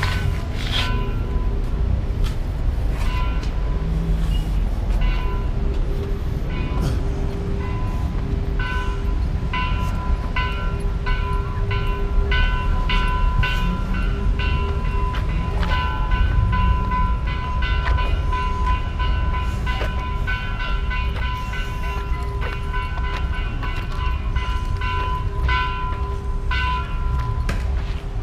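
Low rumble of wind buffeting the microphone, with steady held tones over it that come and go and frequent light knocks.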